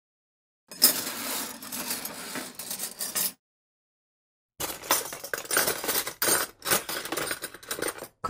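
Dishes and glassware clattering and clinking in two bursts: the first starts about a second in and lasts a couple of seconds, the second starts about halfway through with a denser run of sharp clinks.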